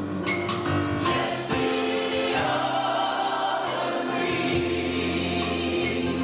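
Live gospel music from a church band: a saxophone section playing held chords over keyboard and drums, with voices singing.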